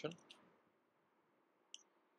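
Near silence, with one short, faint mouse click near the end.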